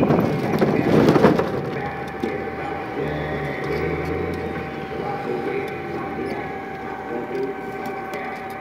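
A small manual car's engine and road noise heard from inside the cabin while driving along a town road, with a steady thin tone running through it and a low engine hum that rises for a moment a few seconds in.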